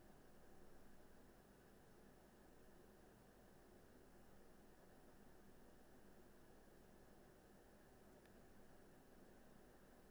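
Near silence: faint steady background hiss of room tone.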